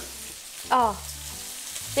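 Diced bacon sizzling in a frying pan, a steady frying hiss.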